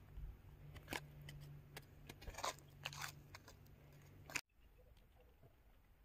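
Faint, scattered scratches and clicks of a small plastic toy scoop digging in loose dry dirt, with a faint low hum behind them. About four seconds in, the sound cuts off suddenly to near silence.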